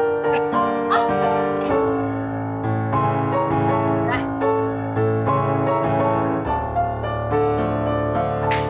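Solo piano playing a steady accompaniment for a ballet class exercise, with chords and notes changing about every half second. A few short hissy noises break in near the start and about halfway through.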